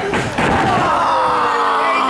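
A heavy thud on a wrestling ring's canvas, as a wrestler is driven flat onto the mat about half a second in. A long shout follows, held for about two seconds and slowly falling in pitch.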